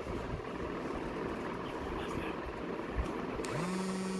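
Steady room noise with faint murmuring voices. Near the end a short low tone rises, holds and falls.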